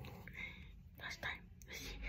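Soft, close-miked whispering in short breathy phrases, with mouth sounds as a square of dark chocolate is put in the mouth.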